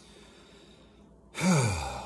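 A man's sigh, voiced and falling in pitch, about one and a half seconds in, trailing off with his breath.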